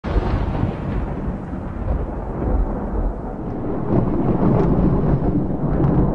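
Thunder rumbling continuously, deep and loud, as an intro sound effect, swelling a little about four seconds in.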